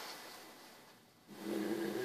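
A pause in a man's speech: faint room tone, then his voice starts again, low and drawn out, about two-thirds of the way through.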